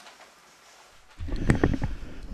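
Faint room tone, then about a second in a desk conference microphone is switched on close to the speaker, giving a sudden low rumble and a few handling knocks and clicks.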